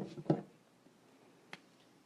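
Two knocks as someone arrives at a lectern and handles things on it, then a single sharp click about a second and a half later, heard in a small room.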